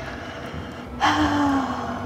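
A woman sighs once, about a second in: a single long breathy exhale with a slight hum of voice that sinks in pitch as it fades.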